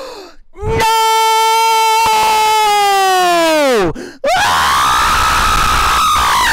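Larry the Cucumber's cartoon voice screaming, very loud: one long held scream that drops in pitch and cuts off about four seconds in, then after a brief break a second, higher scream that keeps going.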